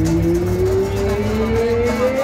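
Live band music in which one held note slides slowly and steadily upward in pitch, over low pulsing bass that thins out near the end.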